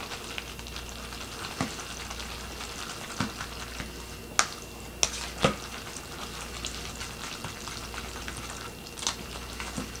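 Metal fork stirring cooked shell pasta in a watery cheese sauce inside a plastic microwave cup. Under a steady soft hiss, the fork gives about half a dozen sharp clicks against the cup.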